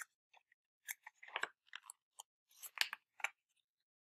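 Paper pages of a hardback picture book rustling and crackling as fingers work at the edge to separate and turn a page: faint, irregular short crackles coming in two bunches.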